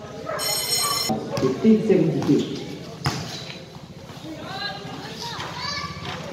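A short, shrill whistle blast about half a second in, lasting under a second, then spectators' voices and shouts across a basketball court. A single sharp knock sounds near the middle.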